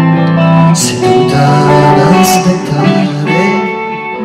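Live band music: a male voice singing held notes into a microphone over guitar accompaniment.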